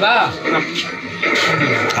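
Voices talking over background music.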